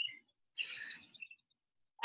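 A short breathy exhale, with a few brief, faint high-pitched chirps around it.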